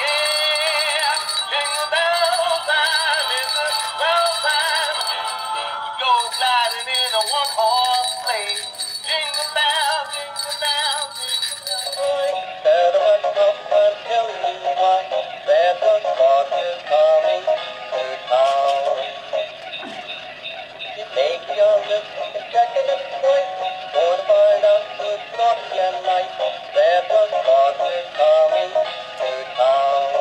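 Tinny electronic Christmas songs with singing, played by battery-operated animated plush toys. About twelve seconds in, one song cuts off and a different, thinner-sounding song takes over.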